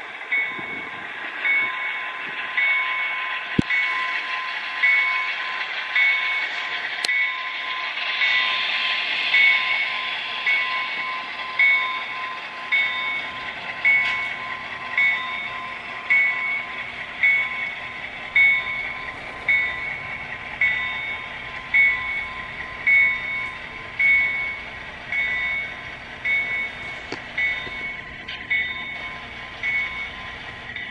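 Model diesel locomotive's sound decoder playing a bell that rings about once a second over a steady engine hum, through the model's small speaker.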